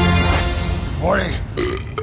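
A man belches once, about a second in, as a held music chord fades out.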